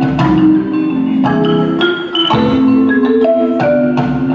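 Marimba ensemble playing: several concert marimbas striking chords and quick melody notes over a ringing low bass line, with a brief dip in loudness about two seconds in.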